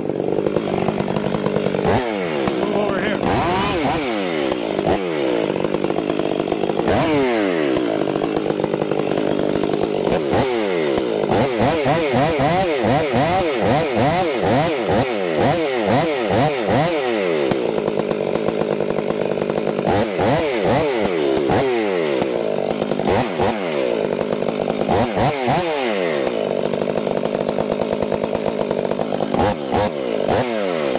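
Large STIHL chainsaw cutting into a downed red oak log, its engine revving up and dropping back over and over as the chain bites and eases in the cut.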